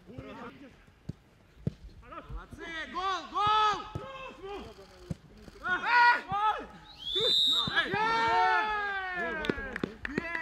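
Footballers shouting and calling out across a training pitch, with several voices overlapping in the second half. A few sharp thuds of a ball being kicked come in the first few seconds.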